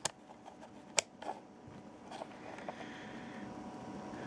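A sharp click about a second in, then a few faint ticks, from handling the rotary range dial of a DT-181 digital multimeter, over faint room tone.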